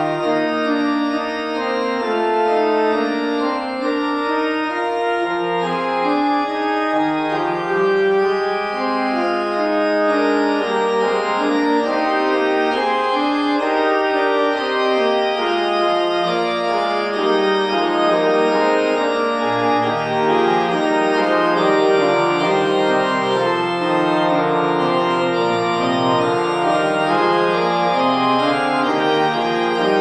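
1991 Martin Ott two-manual mechanical-action pipe organ playing a piece in sustained, moving chords, the bass line reaching lower in the second half.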